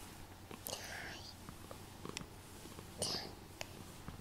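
Soft whispering close to the microphone, two short breathy phrases about a second apart, with a few faint clicks.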